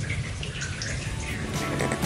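Rainwater dripping after a downpour: scattered small drips over a soft wash of water noise. Background music fades in near the end.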